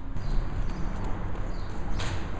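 Hoofbeats of a horse running, over a low steady rumble.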